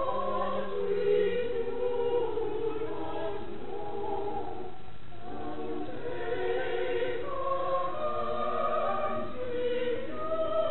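A small group of voices singing a hymn in long held notes, with organ accompaniment.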